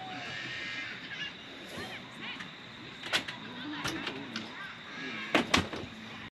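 Indian peafowl pecking at food in a metal fire pit, a few sharp taps of its beak against the metal, two of them close together near the end. Faint bird calls can be heard in the background.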